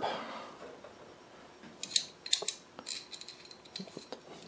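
Steel blade and chipbreaker of a Stanley bench plane being handled together: a run of light metal clicks and scrapes starting about two seconds in, some with a brief high ring.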